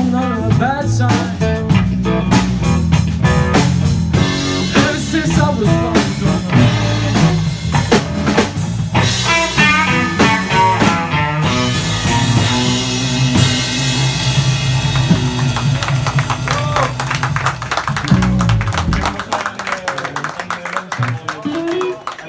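Live blues band playing electric guitars, bass guitar and drum kit. About nineteen seconds in, the bass and drums stop and the guitars ring on, fading, as the song comes to its end.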